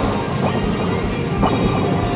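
Hokuto no Ken Battle Medal pusher cabinet playing its game music and effects during a battle animation: two sharp impact hits over the music, about half a second and a second and a half in, then a high rising tone that holds.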